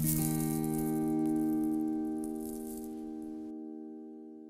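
Closing music sting: a single held chord that begins at once and slowly fades. A light, shaker-like rattle runs over it and stops abruptly about three and a half seconds in.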